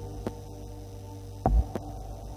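Low steady hum with dull knocks on a wooden stage floor from dancers moving; the loudest, a heavy thump, comes about one and a half seconds in, followed by a lighter knock.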